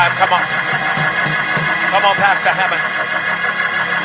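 Church organ holding sustained chords, with a voice calling out over it near the start and again about two seconds in.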